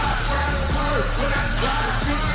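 Hip-hop entrance music played loud over a steady heavy bass, with a rapper shouting over it through a microphone.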